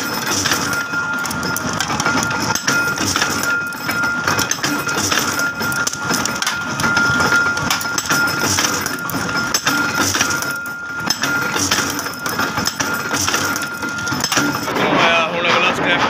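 Hex-nut tapping machine running, a steady high whine that comes and goes over continuous metallic clatter and clicking.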